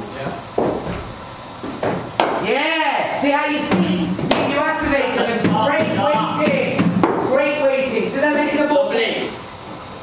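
Voices talking, not clearly made out, over a few sharp knocks, among them a cricket ball struck by a bat in an indoor practice net.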